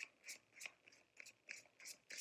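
A tarot deck shuffled by hand: faint, short card-on-card clicks, about three a second.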